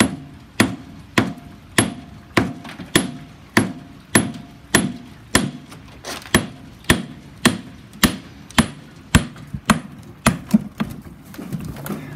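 A hammer striking a block of plaster investment in a metal wheelbarrow, cracking it away from a bronze casting. The blows are sharp and steady, about three every two seconds, and give way to lighter, quicker knocks near the end.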